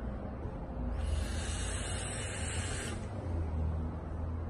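Airy hiss of a vape hit on a custom dual-18650 PWM box mod: air drawn through the atomizer as the coil fires. It swells about a second in and fades out about two seconds later, over a low steady rumble.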